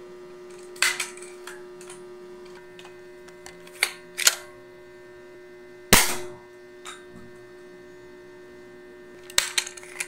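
Dart Zone Storm Squad spring-powered pistol blaster: a few sharp plastic clicks and clacks of handling and priming, then one louder snap of a dart shot about six seconds in, and a quick cluster of clicks near the end. A steady electrical hum runs underneath.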